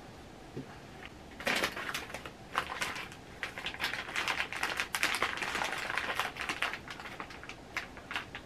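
Plastic candy wrapper crinkling and crackling as it is handled and opened, a dense run of crisp clicks from about a second and a half in until near the end.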